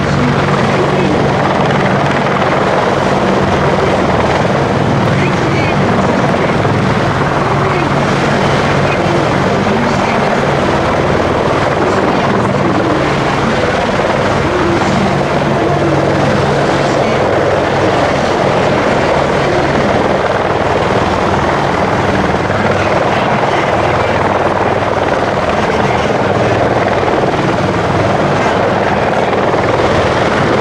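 AH-64D Apache attack helicopter flying low overhead, its rotor and twin turbine engines running loud and steady.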